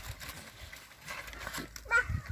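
Faint rustling and scuffing, then a short high-pitched whimper from a Mudhol Hound puppy near the end.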